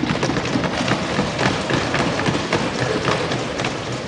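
A crowd of parliament members thumping their desks in approval. Many rapid overlapping knocks merge into a dense, steady clatter that eases a little near the end.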